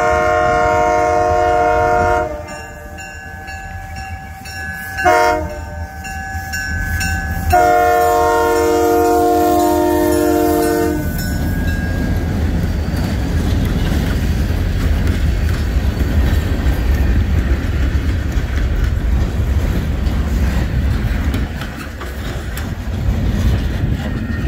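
Great Lakes Central diesel locomotive's multi-chime air horn sounding its grade-crossing warning. A long blast ends about two seconds in, a short blast comes near five seconds, and a final long blast ends around eleven seconds. The locomotive then passes and the freight cars roll by with a steady low rumble and clatter of wheels on the rails.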